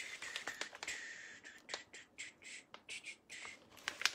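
Craft handling noise: an irregular run of short crackly rasps and clicks, about three a second, from small pieces of tape and a plastic-backed décor transfer sheet being handled.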